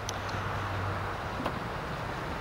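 Cadillac Escalade power liftgate closing: a low steady motor hum that drops away about a second in, with a couple of light clicks.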